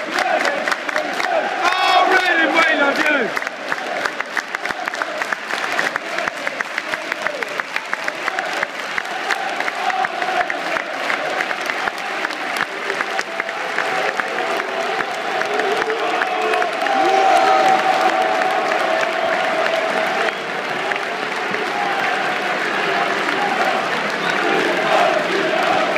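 Football stadium crowd: many voices with fast rhythmic clapping through the first half, giving way to sustained crowd singing later on.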